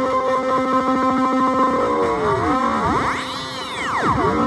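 Korg Volca Keys synth tone, buzzy and lo-fi, run through an Iron Ether FrantaBit digital bit-crusher pedal and sustained as a steady chord. Partway through, as a knob on the pedal is turned, the harmonics split into whistling aliasing tones that sweep up to a high shriek and back down near the end.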